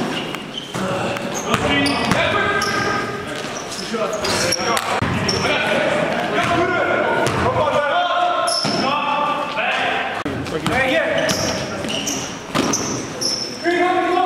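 Basketball bouncing on a gym floor during play, with short high shoe squeaks and players' voices calling out in the hall.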